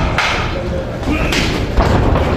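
Thuds of boxing-glove punches and boxers' footwork on the ring canvas, a few sharp impacts against a background of spectators shouting and talking.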